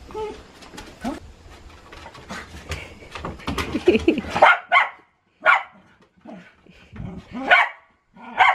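Two dogs barking and whining excitedly at a screen door, eager for their returning owner. The calls are short and high-pitched and get louder about halfway through, coming about a second apart near the end.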